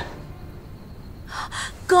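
A woman's single short, sharp breath, heard about a second and a half in, just before she starts speaking.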